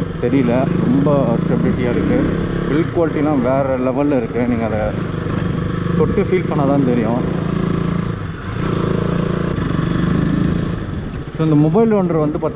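Motorcycle engine running at a steady pace while the bike is ridden, with the rider talking over it.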